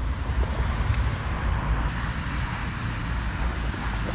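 Steady outdoor background noise with an uneven low rumble and a hiss, typical of wind buffeting the microphone.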